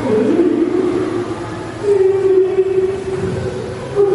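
A voice singing long held notes of a prayer over a loudspeaker: one sustained note, then a second, stronger one starting about two seconds in.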